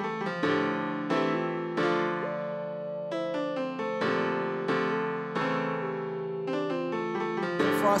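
Hip-hop instrumental intro: a keyboard melody of struck notes that ring and fade, without drums. A pitch-bent voice tag begins right at the end.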